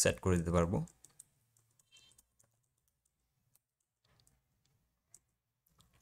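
A man says one word at the start, then a few faint, scattered keystrokes on a computer keyboard as a short word is typed.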